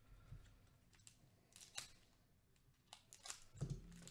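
Faint crinkling of a trading-card pack's plastic wrapper as it is handled and opened: a few short crackles spread out, the loudest near the end together with a soft knock.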